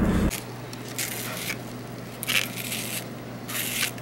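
Zucchini being twisted through a handheld spiral slicer, its blade cutting the zucchini into noodles in three short bursts about a second apart, over a low steady hum.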